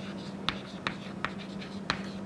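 Chalk writing on a chalkboard: four sharp taps as the chalk strikes the board, roughly half a second apart, with light scratching between strokes.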